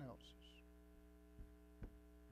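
Near silence: a steady low electrical mains hum, with two faint low thumps in the second half.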